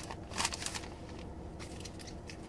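Hands rustling and crinkling the packaging around baseball cards as they are unwrapped, with a short burst about half a second in and a few fainter rustles after it.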